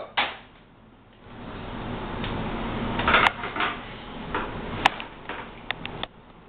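Handling noise of objects on a kitchen counter: rustling with a few sharp clicks and knocks, the loudest about three and five seconds in.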